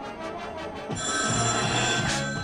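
High school marching band playing. Quieter, evenly pulsed percussion gives way about a second in to a louder sustained chord from the full band, topped by bright, ringing high tones.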